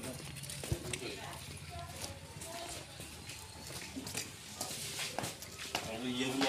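Indistinct voices talking in the background, with footsteps and short clicks on hard ground.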